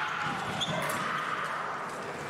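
Echoing sports-hall ambience: distant, indistinct voices carry through a large hall, with a few dull thuds.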